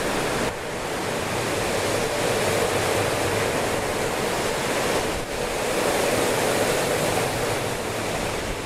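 Strong gusty tropical-storm wind rushing through the trees and across the microphone: a steady, loud rush of noise.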